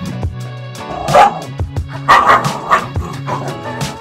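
Dalmatian puppy barking several times, loudest about a second in and between two and three seconds in, over background music with a steady beat.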